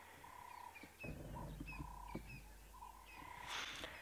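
Faint birdsong: short high chirps repeated several times, with a low steady rumble coming in about a second in.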